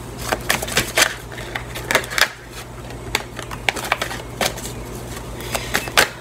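A tarot deck being shuffled by hand: a run of irregular sharp card clicks and snaps. A faint steady low hum lies underneath.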